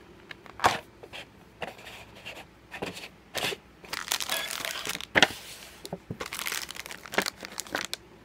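Clear plastic over-lid of a cup-udon container and a foil topping sachet crinkling and crackling as they are handled, a run of sharp, irregular crackles. There are brief squeaks from the plastic lid rubbing on the table.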